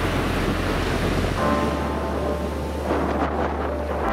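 Surf breaking and washing up a sandy beach, a steady loud rush of waves, with background music playing underneath.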